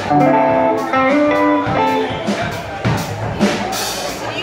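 A live blues band's electric guitars playing loose, scattered notes over drum hits, with cymbal crashes near the end.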